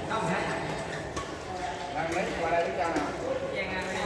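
Several people talking in a large, echoing sports hall, with a couple of sharp racket-on-shuttlecock hits from the badminton courts.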